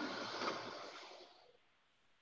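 Oven door being opened: a rush of air and fan noise that fades away over about a second and a half, then silence.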